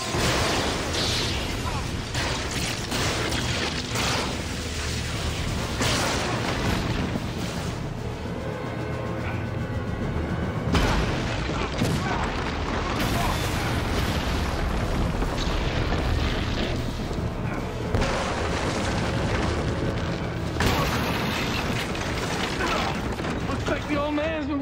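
Action-scene soundtrack: dramatic music under a run of heavy booming impacts and crashes, with a few sharper loud hits about halfway through and again near the end.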